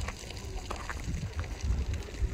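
Wind buffeting the microphone outdoors: an uneven, gusty low rumble, with a few faint ticks over it.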